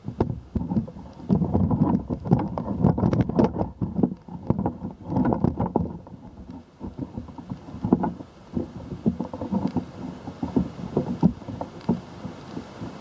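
Handling noise from a camera held up on a pole: irregular rubbing and knocking with scattered clicks, and some wind buffeting the microphone, busiest in the first half.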